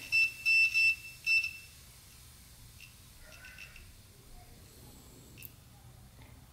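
Electronic beeper wired through a cheap adjustable pressure switch used as a boost cut switch. It gives four short, uneven beeps at one high pitch in the first second and a half, then stops. The beeps are the switch contacts closing on and off as the air pressure is bled back down, which the builder puts down to a slow-reacting diaphragm.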